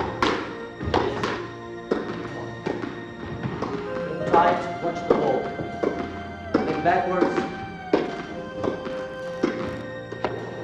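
Squash ball struck by rackets and hitting the court wall in a fast volley rally, a sharp knock about once a second, over background music.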